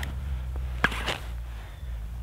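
Handling noise from a small ice-fishing rod and reel: one sharp click a little under a second in, then a couple of fainter clicks, over a low steady rumble.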